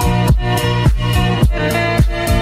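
Background music with a steady beat and pitched instruments.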